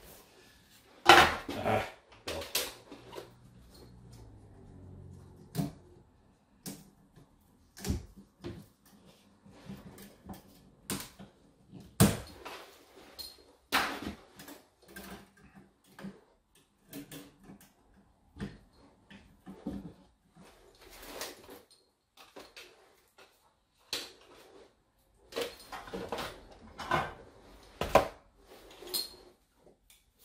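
Irregular clicks, taps and small knocks of pliers and electrical wires being worked at a wall box, a few louder than the rest.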